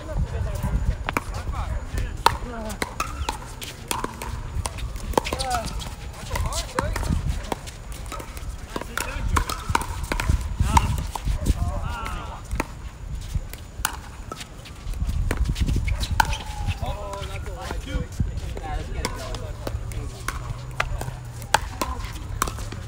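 Pickleball paddles hitting a hollow plastic ball: sharp pops scattered irregularly, from the near court and the courts around it, over the chatter of players' voices and a low rumble.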